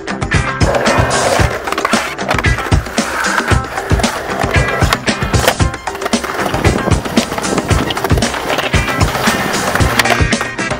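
Skateboard wheels rolling on concrete, under a music track with a steady beat.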